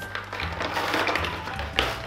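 Background music with a steady low beat, over light tapping from cosmetic packaging being handled, with one sharper knock near the end.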